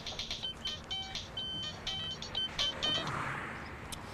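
Mobile phone ringing: a ringtone tune of short, high electronic beeping notes that stops about three seconds in.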